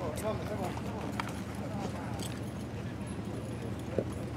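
Faint, indistinct voices of people at the starting gate, with a few scattered hoof knocks as a racehorse is walked up to the gate, over a steady low hum.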